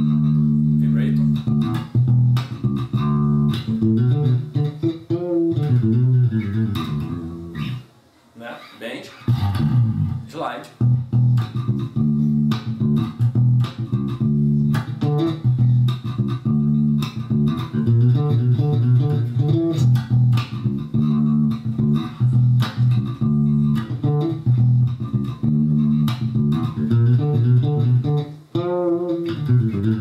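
Four-string Jazz Bass-style electric bass played fingerstyle in a steady groove of plucked notes. About eight seconds in there is a short break, then notes slide and bend in pitch, and near the end a note wavers with vibrato.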